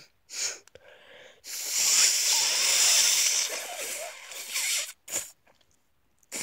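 A person's forceful breath noise: a short puff, then a long hissing blow of air lasting about three seconds that fades out, and another short puff near the end.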